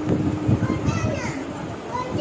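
Indistinct voices talking in the background, with a steady low hum that stops a little before halfway.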